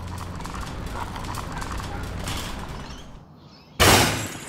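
Low, indistinct background noise, then a sudden loud crash near the end that dies away within half a second.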